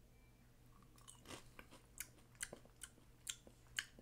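Faint crunching as a dried packaged cricket is bitten and chewed: small crisp crunches every third to half second, starting about a second in.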